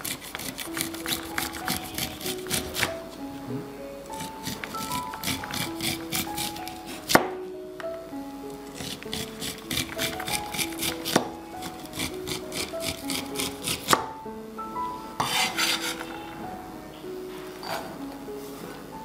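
Chef's knife cutting the kernels off an upright sweet corn cob on a bamboo cutting board: bursts of quick rasping strokes a few seconds long, with a few sharp knocks of the blade on the board. Light background music with a melody plays throughout.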